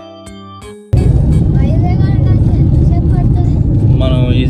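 A short tuned music jingle, then about a second in an abrupt cut to the loud, steady low rumble of a small Maruti Suzuki Celerio hatchback on the move, heard inside the cabin, with faint voices under it.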